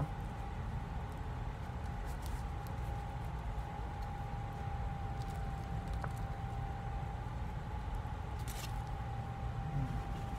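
Faint mouth sounds of biting and chewing a bacon cheeseburger, with a few soft clicks, over a steady low machine hum carrying a constant thin whine.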